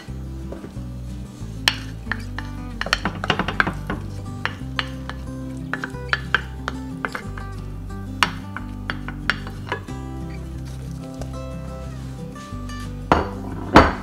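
Background music, with a wooden spoon clicking and scraping against a nonstick frying pan, at scattered moments through the first ten seconds and in a loud pair of knocks just before the end.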